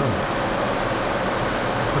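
Steady, even rushing background noise in a room, with no other distinct event.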